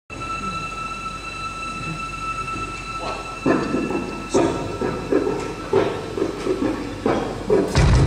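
Live concert room sound: a steady high electronic whine over a low hall rumble. From about three seconds in comes a run of sharp hits roughly every half second. Just before the end the band comes in loud with bass and electric guitar.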